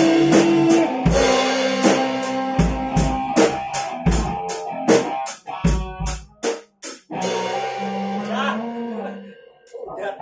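A live rock band ending a song: a Pearl drum kit struck in a run of fills and cymbal hits over guitar and bass. The drums stop about seven seconds in, leaving a few held guitar notes with slight bends that fade out.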